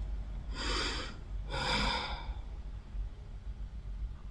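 A woman breathing audibly twice, two breathy rushes of air each under a second long, about a second apart.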